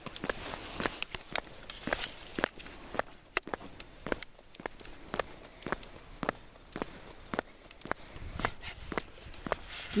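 Boot footsteps on an asphalt road at a steady walking pace, about two steps a second.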